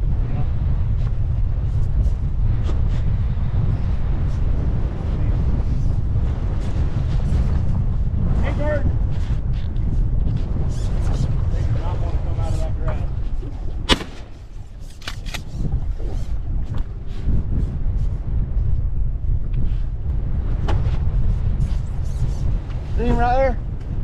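Strong wind buffeting the microphone, a loud, steady low rumble. About two-thirds of the way through comes a single sharp knock, after which the rumble eases for a couple of seconds.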